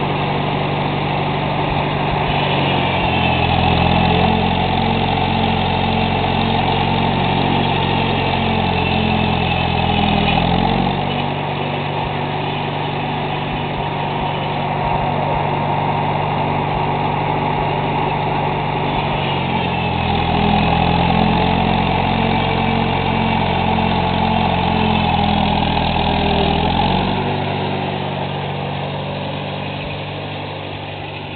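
McCormick-Deering W-6 tractor's four-cylinder engine running steadily while belted to a sawmill. Twice, for about eight seconds each, starting about two seconds in and again about twenty seconds in, it grows louder and changes pitch as the saw takes a load, then settles back.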